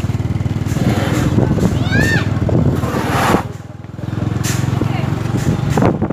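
A small vehicle engine running steadily at low speed. It eases off briefly a little past halfway, then picks up again.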